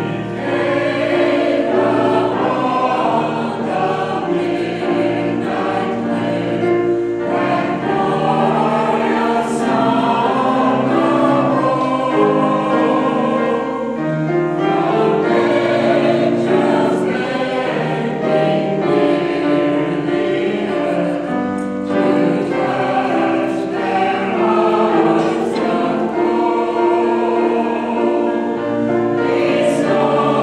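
Mixed-voice choir of men and women singing together in harmony, with held notes.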